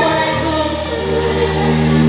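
Live pop song sung by a group of voices together with band accompaniment, the voices holding long notes in the second half.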